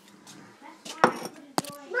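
Kitchenware clinking: two sharp knocks about half a second apart, the first with a brief ringing tail.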